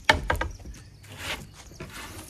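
A bare skateboard deck with no trucks or wheels slapped down flat onto a wooden mini ramp's platform: one loud clap right at the start and a couple of quick knocks after it, then a short scrape about a second in.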